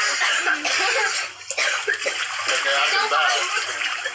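Water splashing and sloshing in an inflatable kiddie pool as several people move about in it, with voices talking and calling out over it throughout. A sharp splash or knock comes about a second and a half in.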